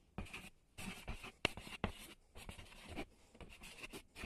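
Ballpoint pen scratching across paper in short writing and drawing strokes, broken by brief pauses where the pen lifts. A couple of sharp ticks a little past the middle, where the pen strikes the paper.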